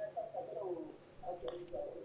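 Faint, muffled, garbled voice of a telephone caller coming through the studio line, breaking up because of weak mobile network signal.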